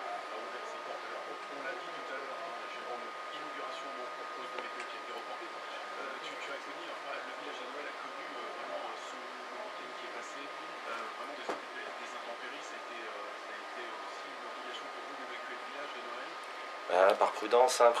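Faint, distant voices murmuring in the background under a thin, steady high-pitched whine. Near the end a man starts speaking close to the microphone.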